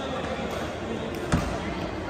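Indoor badminton play echoing in a large hall, with voices in the background and one sharp thump, the loudest sound, about two-thirds of the way through.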